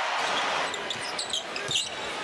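Basketball court sounds over a steady arena crowd: sneakers squeaking on the hardwood floor, with short high squeaks clustered in the middle of the stretch, and the ball bouncing.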